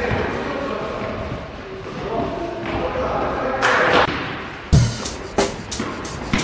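Basketball bouncing on a gym floor, starting about three-quarters of the way through and repeating about two to three times a second as it is dribbled, over background music.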